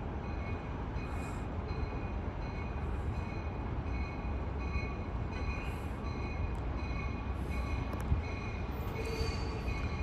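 Amtrak Capitol Corridor passenger train arriving, led by California Car cab car 8305: a steady low rumble of the approaching train, with a faint ring that repeats about twice a second.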